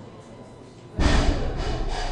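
A sudden heavy thump about a second in, with a deep booming tail that fades over about half a second.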